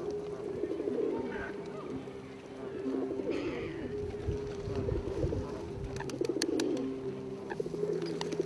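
A flock of feral pigeons cooing, overlapping low repeated coos. There are a few sharp clicks about six seconds in.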